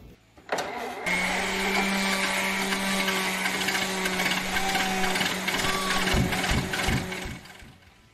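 A motor running steadily with a hum and a hiss. It starts suddenly about half a second in and fades out near the end.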